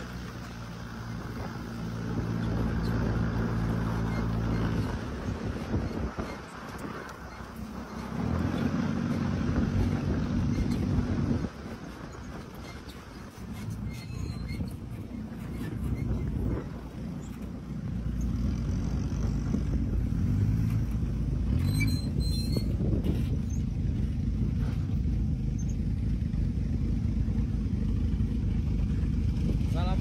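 Desert buggy engine running under way over sand, with wind and tyre noise. The engine note eases off twice in the first half, once around five seconds in and again sharply near the middle, then picks up and runs steadily through the second half.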